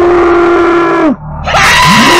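A man screaming: a loud scream held on one pitch for about a second that then drops away, followed near the end by a second scream that swoops up in pitch.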